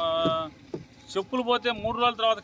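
A man speaking, with a short pause about half a second in before he goes on.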